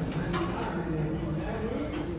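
Indistinct chatter of several people talking in the background, with a brief click about a third of a second in.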